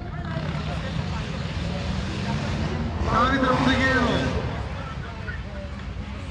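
Open-air football pitch ambience with a steady low rumble. A man's raised voice calls out loudly about three seconds in, for just over a second.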